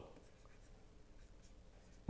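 Near silence: room tone with faint taps and scratches of a stylus writing on a tablet screen.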